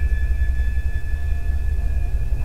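Steady low rumble with thin, constant high-pitched whine tones over it: the recording's own background noise between words.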